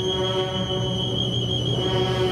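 Brass and woodwind procession band (saxophones, clarinets, trumpets, trombones) playing a Guatemalan processional funeral march, holding one long sustained chord with a high note on top.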